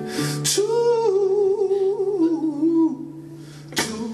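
A male singer holding one long wordless note with a wavering vibrato over a sustained guitar chord in a live band song, then a fresh strummed chord near the end.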